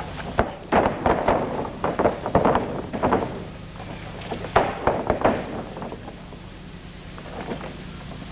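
Thuds and knocks of two grapplers' bodies hitting and scuffling on a ring canvas, in a dense flurry over the first three seconds and another about halfway through, then sparser. A steady low hum runs underneath.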